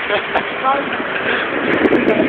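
Voices and laughter of a small group of people over a steady rush of background noise.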